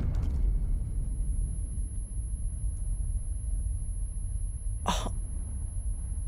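Anime explosion aftermath sound effect: a steady high-pitched ear-ringing tone over a low rumble. A short sharp burst cuts in about five seconds in.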